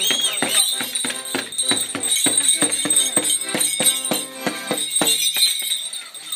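Accordion playing a lively folk dance tune over a quick steady beat, with bells jingling, the music stopping about five seconds in.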